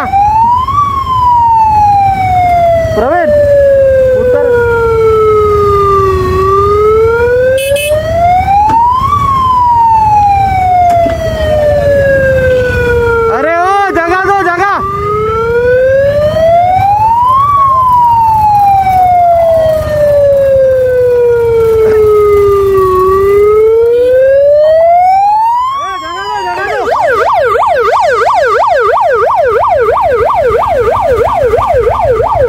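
Ambulance electronic siren in a slow wail: each cycle rises for about three seconds and falls for about five. A brief rapid warble cuts in twice, and near the end it switches to a fast yelp. A low traffic rumble runs underneath.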